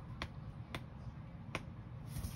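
Sheets of a paper pad being handled: three sharp, light clicks roughly half a second to a second apart, over a steady low rumble.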